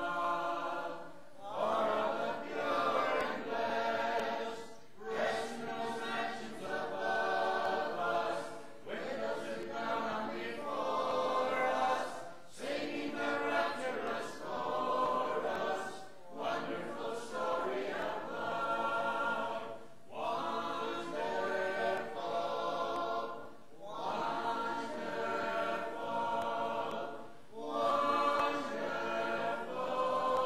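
A church congregation singing a hymn together a cappella, with no instruments, line by line, with a short breath between phrases every three to four seconds.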